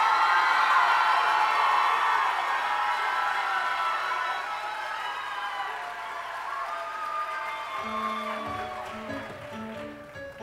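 Audience cheering and applauding after a show choir's number ends on a final hit, slowly dying away. About eight seconds in, the band starts the next song's intro with steady, rhythmic bass and keyboard notes.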